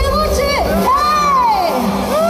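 A high voice calling out in long drawn-out glides that rise and then fall, over crowd noise.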